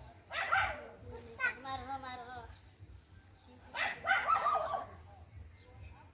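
A dog barking, two calls about three and a half seconds apart, with a faint wavering voice between them.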